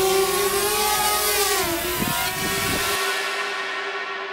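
Small quadcopter drone's propellers whining with a steady pitch that dips about halfway through, then becoming muffled and fading near the end.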